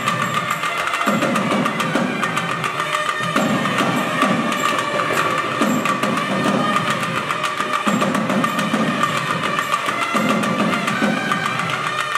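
A Tamil periya melam ensemble playing: nadaswaram double-reed pipes sounding over a steady high drone, with rapid, dense strokes from thavil barrel drums.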